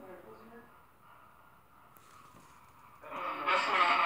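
A recording played back through a phone's small speaker: faint hiss at first, then about three seconds in a louder, hissy, voice-like sound lasting a second or so.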